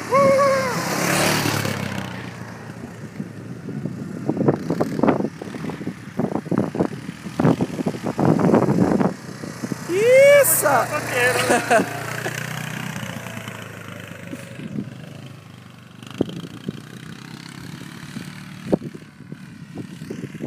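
Quad bike (ATV) engine running steadily at low speed, with people calling out, whooping and laughing over it.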